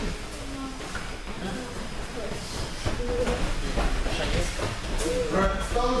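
Judo players grappling on the mats: jackets rustling and bodies scuffling and shifting, a steady noisy scuffle with occasional soft knocks, with voices across the hall.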